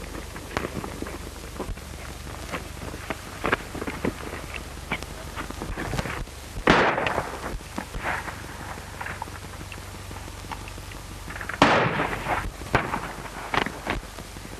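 Gunshots in a western shootout on an old film soundtrack: scattered lighter cracks and knocks, and two much louder shots about seven and twelve seconds in, over a steady low hum.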